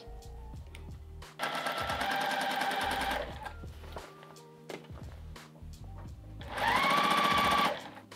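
Juki sewing machine running in two short bursts as a seam is stitched, one of about two seconds and a later one of about a second; the motor's whine rises as it speeds up at the start of the second burst.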